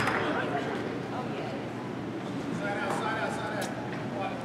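Reverberant gymnasium ambience: a low murmur of distant voices from players and spectators echoing in the hall, with a few faint words near the end.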